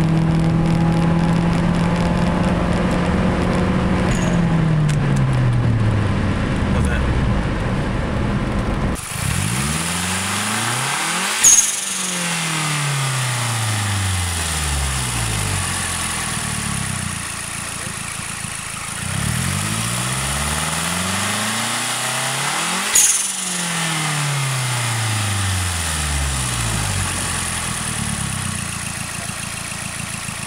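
Mazdaspeed 6's turbocharged 2.3-litre four-cylinder, heard from inside the car, holds high revs and then winds down as the throttle is lifted. Then, from the engine bay, it is revved twice, and each rev ends in a sharp hiss from the HKS SSQV blow-off valve venting as the revs fall away.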